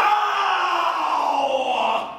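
A man's voice holding one long, loud vocal cry on stage. It starts abruptly and cuts off after about two seconds.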